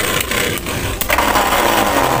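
Two Beyblade spinning tops whirring and scraping around a plastic Beyblade stadium, with several sharp clacks as they collide. The clash knocks one top out of the stadium: a knockout finish.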